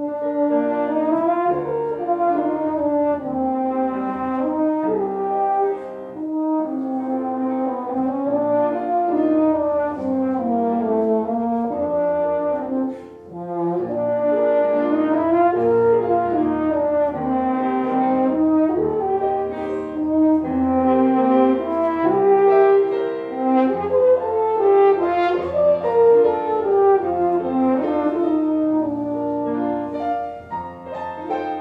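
French horn playing a slow, singing melody with piano accompaniment. The horn breaks off briefly about 13 seconds in, then carries on.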